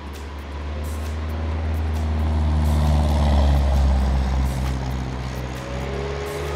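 Cessna 172's piston engine and propeller droning steadily. The sound grows louder to a peak about halfway through and then eases off as the plane makes its low pass.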